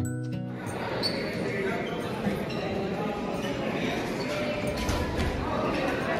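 Background music with plucked, guitar-like notes ends about half a second in, giving way to the din of a basketball game in a gymnasium: crowd chatter and voices with basketballs bouncing on the hardwood court.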